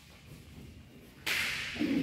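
A badminton racket striking the shuttlecock once, a sharp crack a little over a second in that echoes briefly in the hall.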